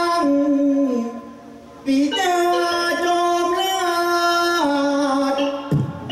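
A singer's voice in likay style, holding long drawn-out notes that step downward in pitch. It breaks off for about a second, then comes back and holds more long notes.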